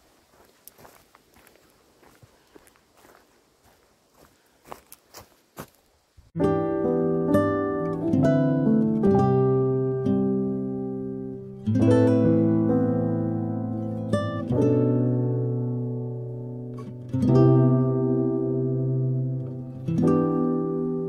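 Faint footsteps on a leaf-strewn woodland path, then about six seconds in, instrumental background music of plucked strings starts and plays on, its chords changing every few seconds.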